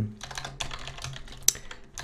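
Typing on a computer keyboard: a run of quick, uneven key clicks, with one sharper click about one and a half seconds in.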